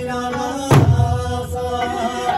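Okinawan Eisa drumming: a single heavy stroke of the large barrel drums about three-quarters of a second in, with a deep boom, over a sung Okinawan folk melody.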